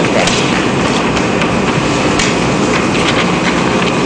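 Steady, hiss-like background noise of a meeting room's recording, with a few faint clicks and light knocks.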